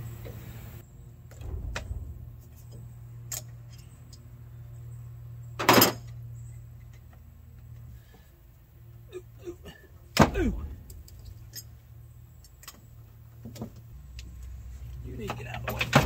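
Scattered clinks and knocks of hand tools on metal in a car's engine bay as the air-conditioning lines are taken off the compressor, with two louder clanks about six and ten seconds in.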